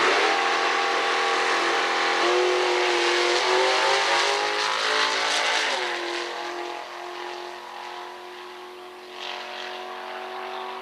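A Super Pro drag car making a full-throttle run from the line. Its engine note drops in pitch twice, about two seconds in and near six seconds, at the gear changes. The sound then fades as the car pulls away down the track.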